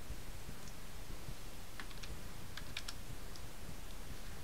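A handful of sharp computer keyboard keystrokes, bunched together about two to three seconds in, over a steady low background rumble: a short command being typed into an ADB shell.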